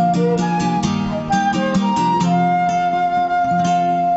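Concert flute playing a melody over picked acoustic guitar; in the second half the flute holds one long note.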